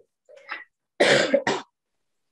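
A person coughing: a softer throat sound, then two hard coughs in quick succession about a second in.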